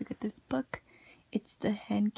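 A woman speaking softly, close to a whisper: a few short, quiet words.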